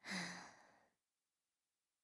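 A woman's voice gives a short, breathy "eh", close to a sigh, lasting about half a second, then silence.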